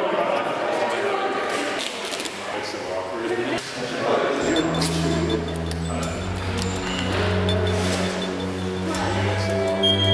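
Indistinct chatter of a group of people in a large room, with background music of low sustained notes coming in about halfway through.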